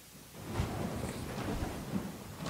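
Camera handling noise: a low, irregular rumble and bumping on the microphone as the camera is moved, starting about half a second in.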